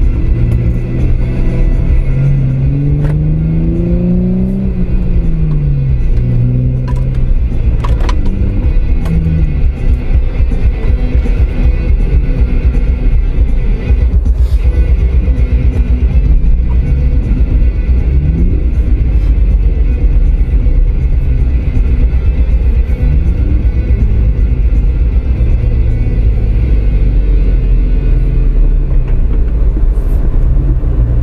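Off-road vehicle's engine running under load while driving a snow-covered trail, with a strong steady low rumble. In the first few seconds the engine pitch rises and falls as it revs up and eases off.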